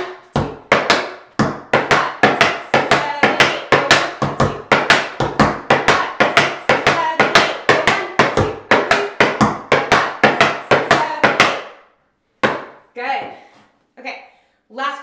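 Tap shoes striking a wooden tap board in a quick, even stream of crisp taps (flaps, heel drops and shuffles) in a swung rhythm. The taps stop about twelve seconds in.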